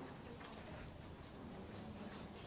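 Faint room noise of a large classroom with scattered light taps and clicks, a few irregular knocks over the two seconds.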